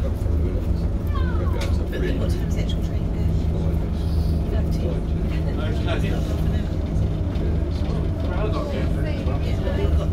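Diesel engine of a preserved Ailsa double-decker bus idling steadily, heard from inside the lower saloon under passengers' chatter.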